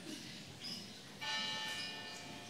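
A church bell struck about a second in, its tone ringing on, sounding the hour.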